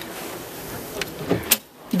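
Steady faint hiss, then a faint click about a second in and a sharper click half a second later as the latch of a boat's side storage-compartment hatch is released.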